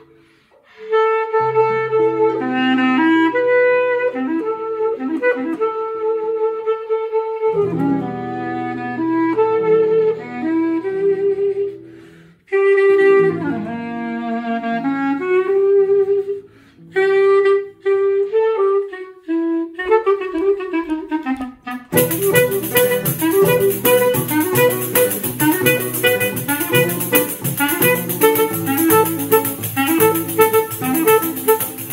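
Oehler-system clarinet playing the melody of a Brazilian baião over seven-string guitar bass lines, starting after a brief break. About 22 seconds in, the pandeiro's jingles and fuller guitar strumming come in and the music grows denser.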